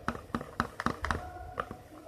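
A flat stirring stick knocking and scraping against the sides of a plastic tub while stirring a glue-and-water slime mix: a quick, irregular run of light taps.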